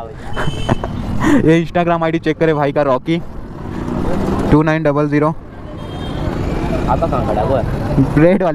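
Men talking, then the engine and road noise of passing street traffic growing louder through the second half.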